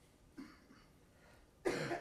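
Quiet room tone, then near the end a sudden, short cough close to the microphone.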